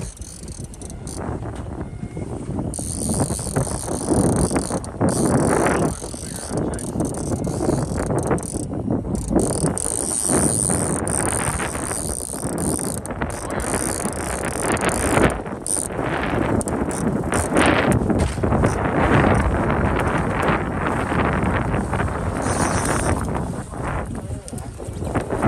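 Strong gusty wind buffeting the microphone over the noise of a trolling boat, a loud rough rumble that swells and eases.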